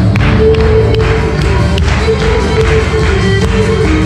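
Loud live Greek folk music for a costumed dance show, held notes over a steady beat, with audience members clapping along.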